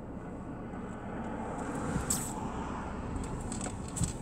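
Cabin noise of a Cadillac moving off slowly: a low, steady engine and road hum, with one brief sharp sound about halfway through.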